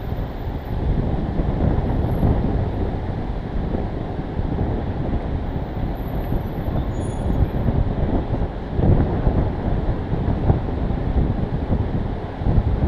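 Wind buffeting on the microphone of a camera mounted on the outside of a car, over the low noise of the car's engine and tyres as it rolls slowly forward, rising and falling unevenly.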